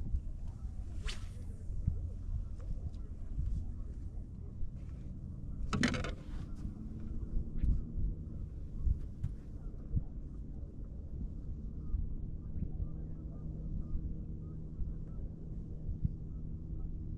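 A fishing rod cast: a quick swish of the rod about six seconds in, with a fainter swish about a second in. Underneath, a steady low wind rumble on the microphone and a faint steady hum.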